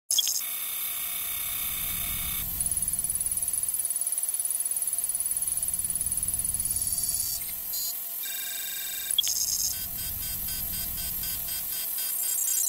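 Electronic computer-style sound design: bursts of synthetic beeps and data tones switching on and off over a steady hum and a low rumble. A block of stacked tones comes in near the start, a high pulsing tone runs from about three to seven seconds in, and another burst of tones comes at about eight and a half seconds.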